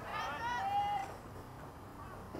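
A person calling out from the ballpark: one drawn-out, wavering shout lasting about a second, then only faint background noise.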